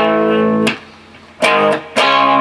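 Clean-toned Ibanez electric guitar strumming a C-sharp minor chord barred at the ninth fret: a quick down-up strum that rings briefly, then is choked off for a rest. The pattern repeats about a second and a half later.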